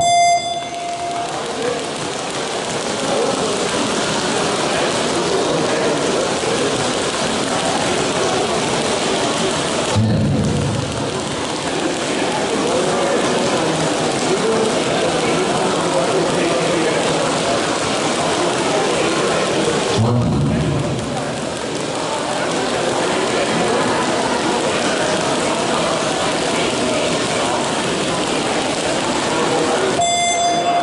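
Jump ropes whipping rapidly and ticking against a sports-hall floor through a 30-second single-rope speed event, a dense, even patter like heavy rain, with voices shouting over it. A short beep marks the start and another the end.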